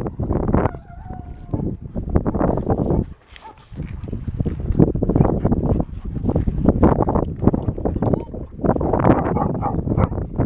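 Footsteps and dogs' paws crunching on a gravel path, irregular and close, with German Shepherds panting. There is a short lull about three seconds in.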